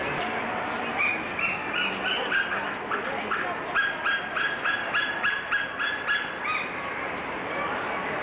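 An animal giving a rapid series of short, high yelping calls, starting about a second in, speeding up to roughly three calls a second, and stopping near the end.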